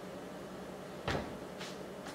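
A bundt pan set down on a kitchen countertop: one sharp knock about a second in, then a lighter knock just after.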